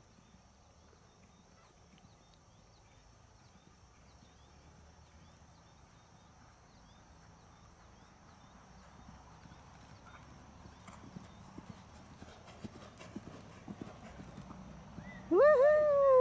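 Horse cantering on a sand arena, its hoofbeats faint at first and growing louder as it comes closer. Near the end a loud high-pitched call sweeps up and then slowly falls for about a second.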